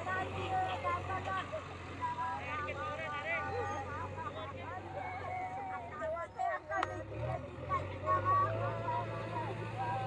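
JCB backhoe loader's diesel engine running steadily, with people talking over it.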